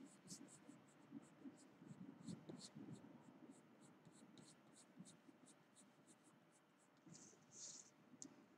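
Faint pencil strokes scratching on paper, short and quick at about three a second, as graphite shading is laid into a drawn eyebrow. Near the end the sheet of paper is turned with a brief rustle.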